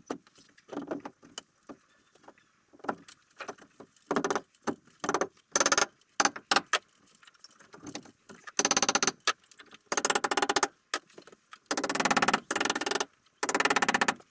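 A cordless impact driver hammering in four bursts of about a second each, driving long torque screws into log timber, after some scattered knocks and scrapes as the timber is handled into place.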